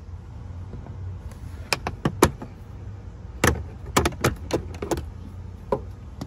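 Jeep Wrangler JL plastic dash trim clicking and knocking as it is handled and pried loose by hand, with a run of sharp, irregular clicks over a low steady hum.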